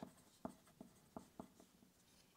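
Pencil writing on paper: about six faint, short scratching strokes spread across the two seconds as letters are formed.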